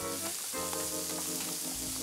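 Chopped spring onion and shallot sizzling in oil in a wide pan with halved lobster heads, stirred with a wooden spatula: the start of a sofrito. Music plays underneath.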